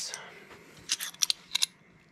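Steel adjustable wrenches clinking against each other as they are picked up: a quick cluster of about five light metallic clicks about a second in.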